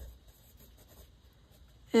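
A pencil writing on paper: faint, irregular scratching strokes. A voice starts right at the end.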